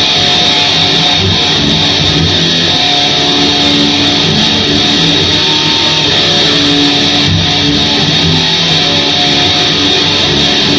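Distorted electric guitar playing a riff live through an amplifier, in an instrumental metal song.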